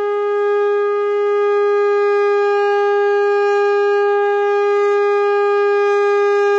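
A conch shell (shankh) blown in one long, steady note at an even volume, sounded at the close of the aarti.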